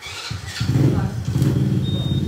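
An engine starts up about a third of a second in and runs steadily with a fast, even low rumble. A faint high steady beep sounds near the end.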